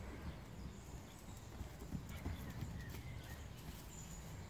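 Hooves of several horses walking and trotting over grass turf: faint, dull, irregular thuds.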